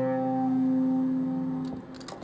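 A rock band's final chord ringing out and slowly fading, with held notes sustaining, then stopping near the end with a few small clicks.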